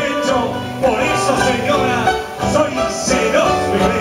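Instrumental passage of a Cuyo folk song played live on guitars, a melody line moving over strummed accompaniment, between sung verses.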